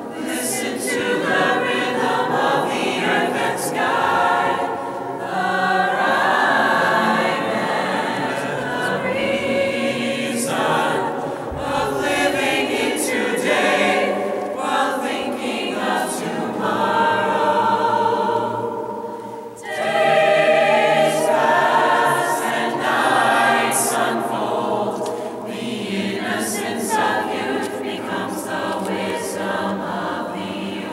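Mixed-voice choir singing unaccompanied in a large church, in sustained phrases. There is a short break about two-thirds of the way through, and then a louder phrase.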